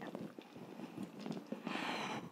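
Light clicks and handling noise from a metal hand press squeezing tincture out of soaked dried echinacea root, with a short hiss near the end.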